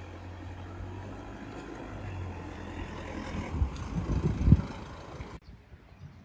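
Cab-over camper truck driving up and past, its engine hum and road noise growing louder and loudest about four and a half seconds in. The sound cuts off abruptly near the end.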